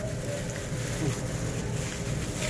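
Steady low background rumble, with faint rustling of aluminium foil and plastic food-service gloves as a burrito is folded by hand.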